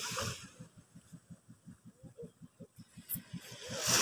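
A small engine running slowly, a faint steady putter of about six or seven beats a second. A rush of noise rises near the end.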